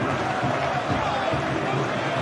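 Steady, even background noise of a televised football match between commentary lines, with no single event standing out.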